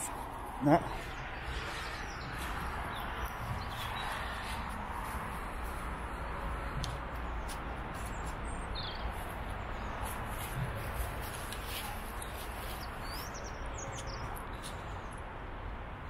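Outdoor ambience: a steady low rumble and hiss, with a few faint, short bird chirps now and then.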